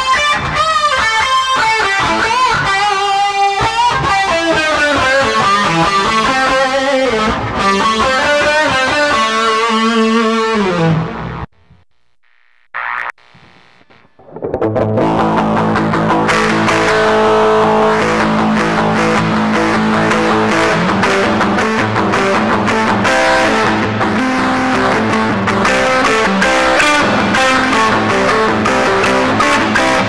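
A Squier Bullet Mustang HH electric guitar played solo. It opens with single notes that waver and bend in pitch and slide downward, then breaks off for about three seconds of near silence. After that it comes back with a fuller, denser run of chords to the end.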